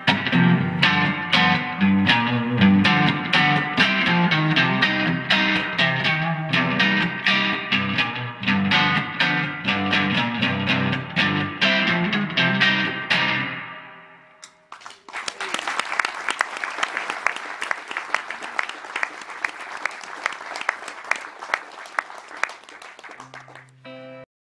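Guitar playing the song's instrumental ending in a steady strummed rhythm, which fades out about fourteen seconds in. An audience then breaks into applause for the rest, gradually easing off.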